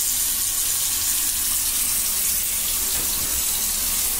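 A thin stream of water running steadily from a tall spout tap into a washbasin, falling onto the drain.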